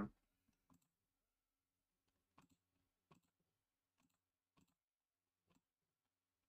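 Faint computer mouse clicks, about six, unevenly spaced.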